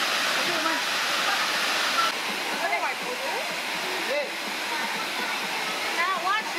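Waterfall rushing steadily, with a few brief snatches of voices heard over it.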